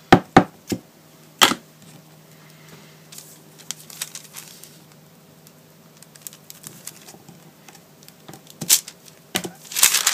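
A few sharp taps of an acrylic-mounted rubber stamp being inked and handled, then a quiet stretch while it is pressed down. Near the end, crackly tissue paper crinkles as it is peeled off the stamp.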